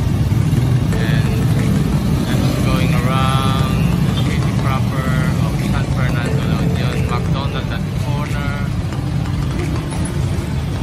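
City street traffic: a steady low rumble of engines, with indistinct voices over it.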